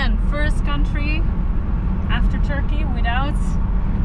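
Steady low road and engine rumble inside the cabin of a Toyota Land Cruiser 76 series at motorway speed, under a woman's voice talking and laughing.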